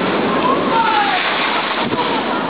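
A big sea wave breaking over a sea wall, its spray showering down in a loud, steady rush like heavy rain. A voice squeals briefly about half a second in.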